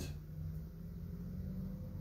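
Room tone: a steady low hum with no distinct event.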